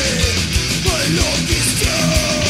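Thrash/death metal recording: heavily distorted guitars over a fast, steady kick drum, with a line that bends up and down in pitch about a second in.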